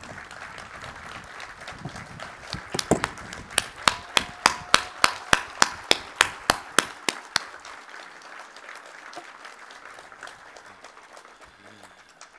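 Audience applauding, with one person's loud hand claps close to the microphone, about four a second, from about three seconds in until about seven seconds in; the applause then thins out.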